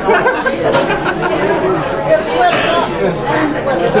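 Group chatter: several voices talking over one another, with laughter.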